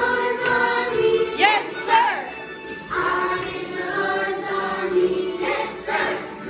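A group of children singing an action song together, with held notes and a couple of quick swooping pitch glides about one and a half and two seconds in.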